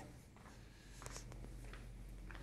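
Faint room tone in a small indoor space: a steady low hum with a few light ticks about a second in.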